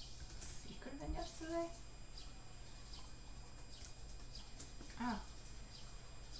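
A woman's voice in two brief murmured sounds, about a second in and again near the end, over a faint steady low hum and scattered light ticks.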